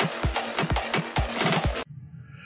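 Two electronic dance tracks, one at 128 BPM and one at 150 BPM, playing at the same time without beatmatching, so their kick drums clash at uneven spacing: a train wreck. The music cuts off suddenly near the end.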